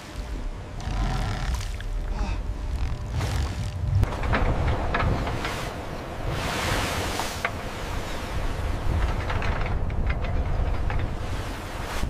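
Rough sea and wind with a deep, steady rumble underneath, swelling into a louder rush of water about six seconds in.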